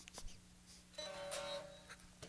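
A light click, then a single strum on a Charvel Super Stock SC1 electric guitar about a second in, a faint chord ringing for about a second.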